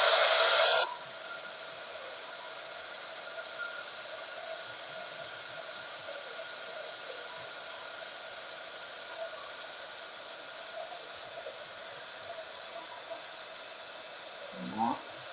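Handheld embossing heat gun running steadily as it melts embossing powder on a stamped card: a fan blowing with a faint steady whine. It is much louder for about the first second, then carries on at an even, lower level.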